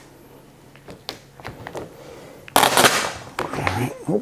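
Large sheet of vinyl wrap film being handled and squeegeed onto a car hood: a few soft clicks, then a loud half-second rustle of the film past the middle, followed by quieter rustles.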